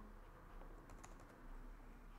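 Near silence: room tone with a few faint clicks from computer input about a second in, as the document is scrolled.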